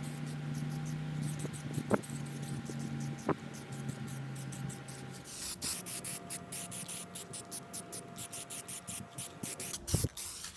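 Aerosol spray paint can hissing as it sprays a coat of paint onto bare steel brackets, with two short sharp sounds a couple of seconds in.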